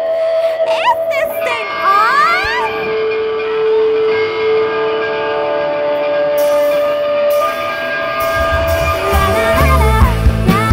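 A live indie-pop band starting a song. A woman's voice slides through short vocal lines over held chords, then drums and bass come in with a heavy beat about eight seconds in.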